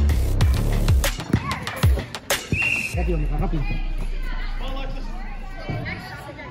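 Indoor soccer game sound: voices over background music with a deep bass, and sharp knocks through the first half. A short, steady high-pitched tone sounds about halfway through, and the bass fades toward the end.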